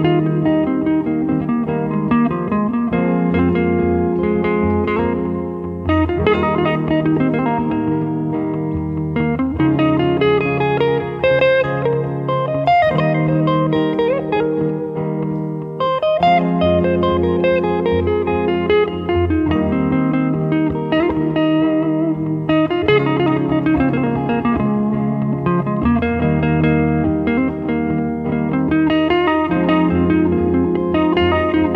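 Stratocaster-style electric guitar playing fast lead lines through an amp over a backing track, whose sustained bass and chords change about every three seconds.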